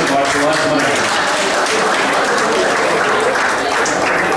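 Audience applauding steadily, with voices talking over the clapping.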